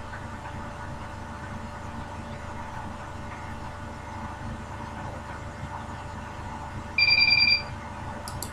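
Steady low background hum, then a single short, high electronic beep of about half a second near the end.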